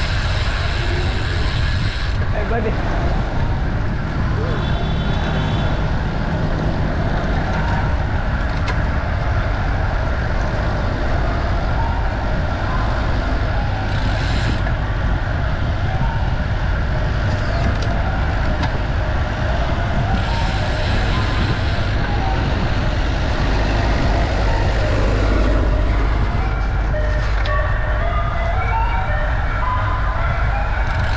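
Steady wind rumble on the camera's microphone while cycling at speed through city traffic, with street and traffic noise underneath and brief bursts of hiss.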